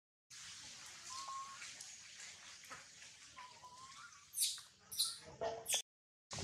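Quiet outdoor background hiss with two short, thin chirps. Near the end come three brief, loud, high-pitched scraping rustles.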